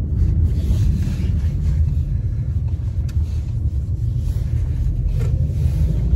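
Steady low road rumble inside a moving car's cabin.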